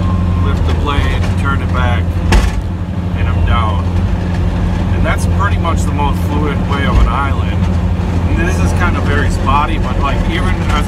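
Plow truck's engine running with a steady low drone inside the cab while the blade pushes snow, with one sharp knock about two and a half seconds in.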